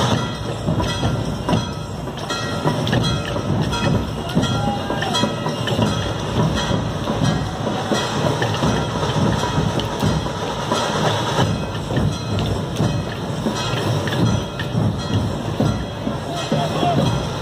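Loud, dense street-procession din, with fast, continuous rhythmic drumming.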